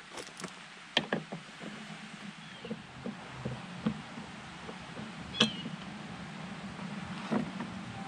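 Scattered light clicks and knocks of a screwdriver backing out screws and a flush-mount LED light pod being worked loose from a plastic bumper, the sharpest knock about five and a half seconds in.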